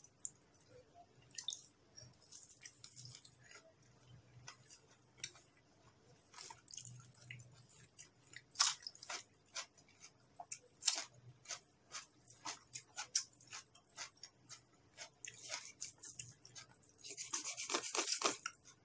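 Faint close-up eating sounds: chewing and many short wet mouth clicks. Near the end a knife scrapes through raw beef on a wooden chopping board.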